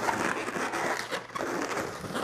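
An inflated latex 260 twisting balloon rubbing under the hands and against itself as it is bent in half and twisted, an irregular scratchy rubbing.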